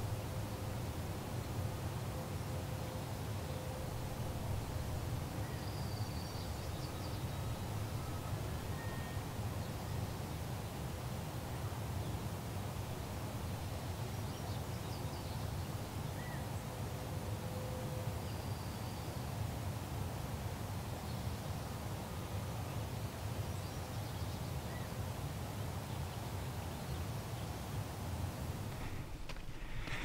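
Open-air ambience: a steady low rumble with faint, scattered bird calls, a few short high chirps about six, fourteen and nineteen seconds in.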